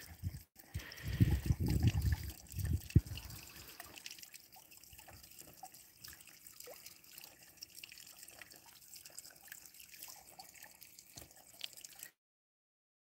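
Faint trickling and dripping water in a garden pond, with a low rumble on the microphone for the first three seconds or so.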